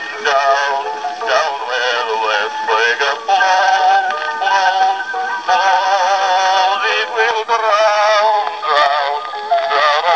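A Columbia Type Q Graphophone playing a two-minute black wax cylinder through its horn: a male baritone singing with a wavering vibrato. The playback is thin, with almost no bass and no top end.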